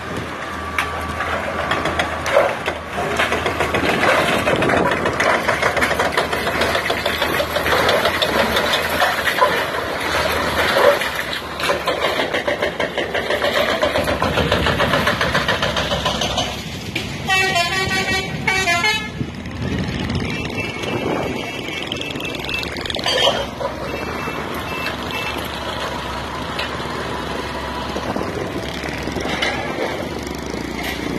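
Street traffic noise with vehicle horns honking and heavy engines running. About seventeen seconds in, a pulsing multi-tone horn sounds for about two seconds, followed by a few shorter horn tones.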